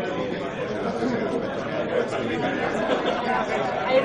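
Many people talking at once in a large hall: steady, indistinct background chatter.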